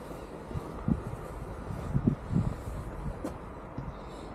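Steady low outdoor background rumble, with a few short soft low knocks or bumps about a second in and again around two seconds in.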